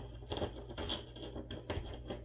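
Light handling noise of empty printed puzzle sheets being gathered and shuffled by hand: soft rustling with a few small, irregular clicks and taps.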